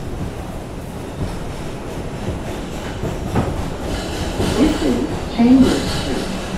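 R142 subway car running through a tunnel, heard from inside the car: a steady rumble of wheels on rail with a sharp clack about three and a half seconds in, getting louder toward the end.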